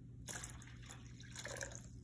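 Water spilling from a tipped glass jar into a plastic tub of water: a faint splashing trickle.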